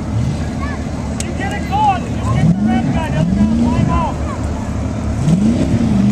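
Demolition derby cars' engines running in the arena, revving up and dropping back several times in long rising-and-falling sweeps, over a continuous low rumble.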